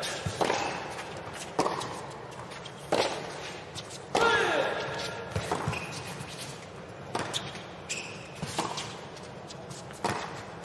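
Tennis rally on a hard court: racket-on-ball strikes about every second and a half, with the ball bouncing between them. A short loud vocal sound on one shot about four seconds in.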